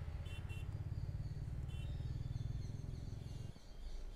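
Low, steady rumble of traffic and a moving vehicle, with a few short high chirps near the start and again about two seconds in; the rumble falls away about three and a half seconds in.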